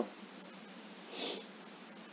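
A single short sniff about a second in, over faint steady background hiss.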